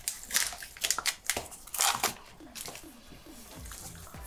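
Chocolate-bar wrapper being torn open and crinkled: a quick run of sharp crackles in the first two seconds, then quieter handling.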